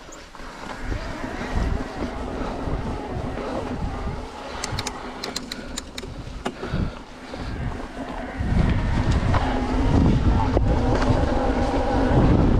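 Specialized Turbo Levo e-mountain bike rolling along a loose gravel trail: tyre crunch and rattle over stones with a steady hum under it, a few sharp clicks around five seconds in, and wind buffeting the microphone that gets much louder from about eight and a half seconds as speed picks up.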